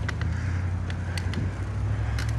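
Steady low rumble of a slow ride along a paved road, with a few light clicks.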